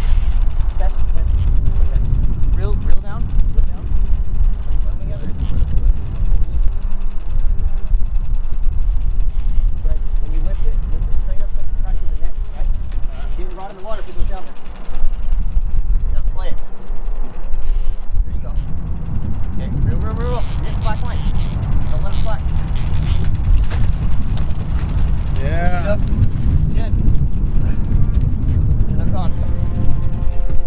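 A few short raised voices over a constant low rumble.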